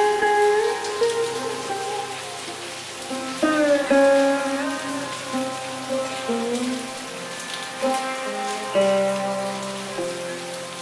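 Sitar playing slowly: plucked notes that bend in pitch over a steady drone, with fresh plucks about three and a half seconds in and again near the end. Rain sounds run underneath as a steady hiss.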